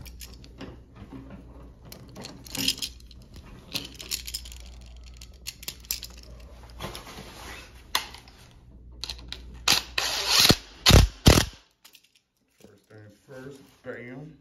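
Handling noise of a wall toggle switch and its wires being worked at an electrical box: scattered clicks and rustles over a low steady hum. A few loud rustling strokes come about ten to eleven seconds in, then the hum cuts off and it goes nearly quiet.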